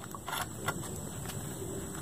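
A few faint, light clicks of a flat aluminum bar being fitted into a small metal bracket in a gloved hand, mostly in the first second, over a low steady background.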